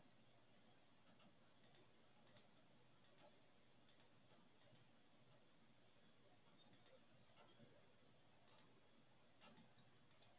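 Near silence: faint room tone with soft, irregular clicks, some in quick pairs, about a dozen over the stretch.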